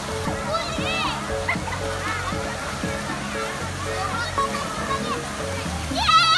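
Water spraying and splashing in a shallow splash pool, under children's shouts and high voices, with music playing along with a steady repeating beat.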